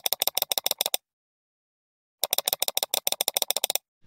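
A rapid clicking sound effect, about ten clicks a second, in two runs with dead silence between: the first is about a second long and the second about a second and a half. It goes with text being typed out on a title card.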